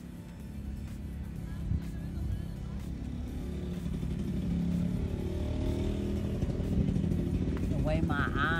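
A motor vehicle's engine, growing steadily louder as it approaches.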